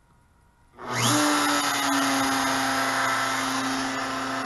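Compact router serving as the spindle of an OpenBuilds LEAD 1010 CNC, switching on about a second in, spinning up quickly and then running at a steady high speed.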